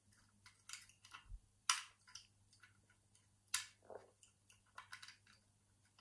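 Wire pick scraping and clicking against the levers and warding inside a vintage Century four-lever mortice lock held under tension, while the front lever is being worked. Irregular light ticks, with a few sharper clicks about two seconds and three and a half seconds in.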